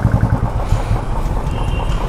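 Motorcycle engine idling: a steady, rapid low thumping.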